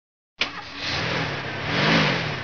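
Cartoon sound effect of a car driving off: the engine comes in suddenly about half a second in and revs, its pitch rising toward the end.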